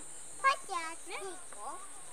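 Insects chirring in a steady high-pitched drone, with a brief laugh about half a second in and faint voices after it.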